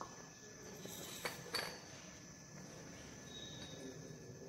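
Two light clinks of laboratory glassware being handled, about half a second apart, as a glass beaker and filter funnel are picked up, over a faint steady high-pitched tone.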